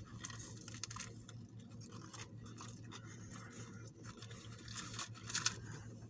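Faint, irregular chewing of a mouthful of grilled chicken sandwich, with soft crunches from the toasted bun and crisp lettuce.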